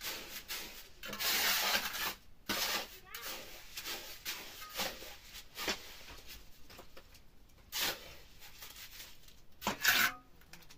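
Steel trowel scraping and turning wet cement mortar against a metal wheelbarrow pan, in a series of short scrapes with one longer stroke about a second in. A louder, sharper scrape comes just before the end.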